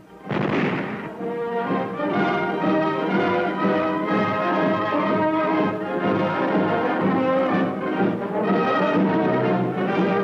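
Orchestral closing music led by brass, on an old 1940s film soundtrack. It opens with a loud noisy crash about half a second in, then settles into held chords.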